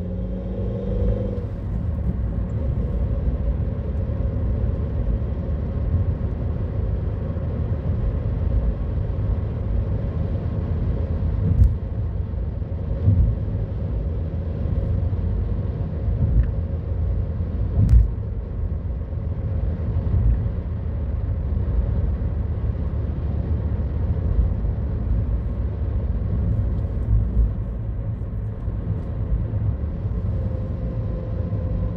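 Car driving on a narrow paved road, heard from inside the cabin: a steady low engine and tyre rumble with a faint steady hum. There are two sharp knocks, about twelve and eighteen seconds in.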